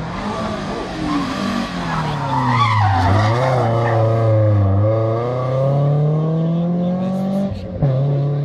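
BMW 3 Series Compact rally car coming in hard: the engine note drops as it brakes for a bend, with tyres squealing briefly, then climbs steadily as it accelerates away.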